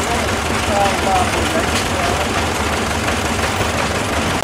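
A stationary engine running steadily with a low rumble, with people's voices over it.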